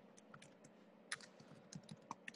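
Faint, irregular clicks of a computer keyboard being typed on, over a low steady hum.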